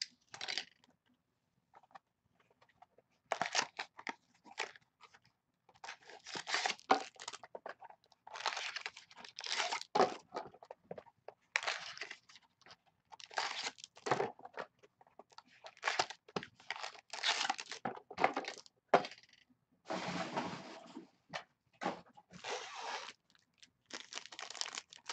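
Foil-wrapped trading card pack and its cardboard box being torn open by hand: irregular bursts of crinkling and tearing, starting about three seconds in.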